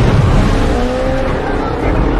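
Film soundtrack of a sea-creature attack among swimmers: loud water splashing and people screaming in panic, with some gliding high cries.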